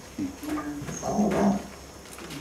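A man's low voice making two short, drawn-out vocal sounds, the second about a second after the first.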